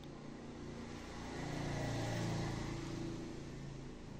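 A passing motor vehicle's engine hum, swelling to a peak about two seconds in and then fading.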